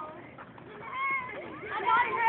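Young girls squealing in high voices: one held squeal about a second in, then rising shrieks near the end.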